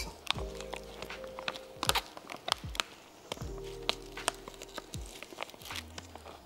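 Scattered wet clicks and smacks of someone chewing a bite of a chamoy-coated pickle, over faint steady tones.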